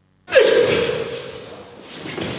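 A martial artist's loud kiai shout, starting about a third of a second in, dipping slightly in pitch, then held and trailing off with the hall's echo.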